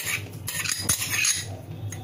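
A metal spoon making light clinks and scrapes against a steel mixing bowl and a small dish as chopped coriander is scraped into the flour.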